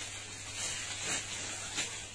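Soft rustling of a synthetic jacket's fabric being handled, a few faint brushes over a low steady hum.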